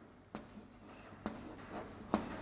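Chalk writing on a chalkboard: faint scratching strokes with a couple of sharp taps as the chalk strikes the board.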